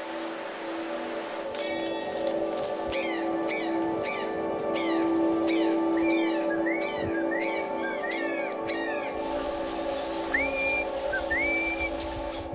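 Soundtrack music with a steady low drone, over which a bird calls repeatedly. From about a second and a half in come quick falling whistled notes, about two a second, then arched notes, and two rising whistles near the end.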